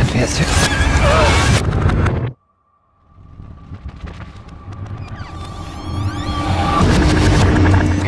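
Movie-trailer soundtrack played backwards: reversed music and garbled reversed dialogue that cuts off suddenly about two seconds in. After a brief silence, a sound with a thin steady tone swells up from quiet and grows loud again near the end.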